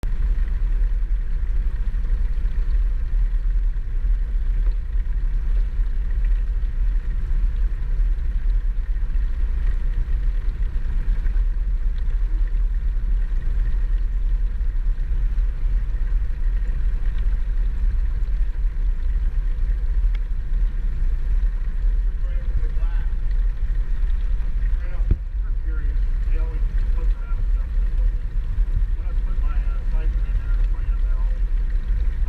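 Steady low rumble of water flowing and circulating in a hatchery fish tank, heard through an underwater camera, coming in abruptly at the start.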